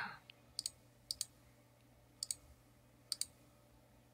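Four faint computer-mouse button clicks, spread irregularly, each a quick double tick of button press and release, as options are picked from a drop-down menu.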